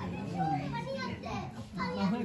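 Background chatter: several people talking at once, none clearly heard.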